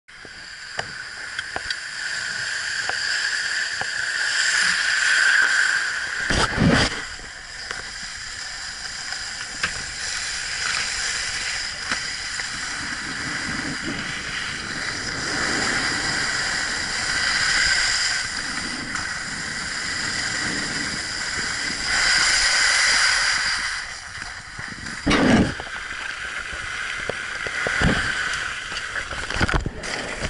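Skis scraping and hissing over groomed snow through a run of turns, swelling and fading as the edges bite in each turn. Two heavy thumps break in, about six and a half seconds in and again near twenty-five seconds.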